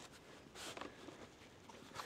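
Near silence: faint outdoor background with a slight, soft swell about half a second in.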